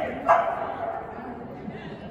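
A dog barks once, sharply, about a third of a second in, and the bark rings on briefly in the large hall.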